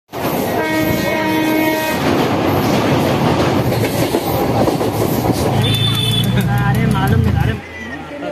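A passenger train running at speed, heard from inside the carriage at an open window: a steady rumble and rattle of wheels on the track. A horn sounds for just over a second near the start. The noise stops abruptly shortly before the end.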